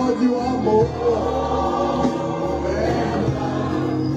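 Recorded gospel music: a choir singing, with sustained sung notes over a steady low accompaniment.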